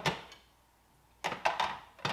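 A glass carafe knocking into the plastic dispenser slot of a SANS countertop reverse-osmosis water purifier: one sharp knock at the start, then a cluster of clicks and clunks about a second later as it is seated.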